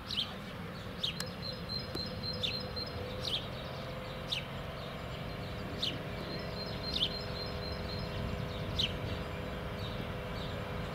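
A songbird gives short falling chirps about once a second, with some quick repeated high notes between them. Underneath runs a steady low hum from a standing DB class 151 electric locomotive, which grows a little about four seconds in.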